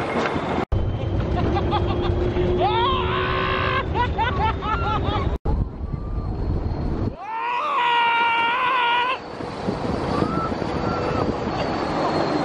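Wind rush and rumble of a Test Track ride vehicle running at speed on the outdoor high-speed loop, with two drawn-out cries over it. The heavy low rumble drops away suddenly about seven seconds in.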